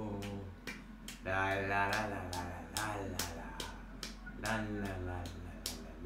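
A voice singing a melody in short phrases over a steady beat of sharp clicks, about three a second.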